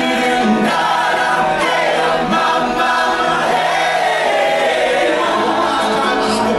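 Live cabaret singing: a male vocalist sings into a microphone with piano accompaniment, and other voices sing along with him.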